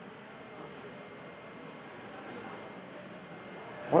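Faint, steady room noise: an even hiss with nothing standing out. A man's voice starts just at the end.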